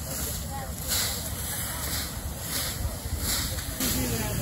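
Leaf rakes scratching through dry fallen leaves in repeated strokes, about one swish every three-quarters of a second, over a low rumble of wind on the microphone and faint voices.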